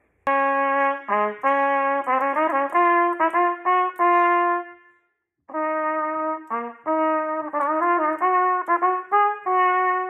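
A trumpet playing a moderately fast étude in two phrases, the first loud and the second answering it more softly as an echo, with a short break about halfway through. Each phrase moves into quick runs of short notes.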